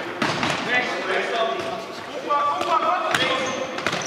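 Futsal ball being kicked and bouncing on a wooden sports-hall floor, a few sharp thuds, with players shouting, all echoing in the large hall.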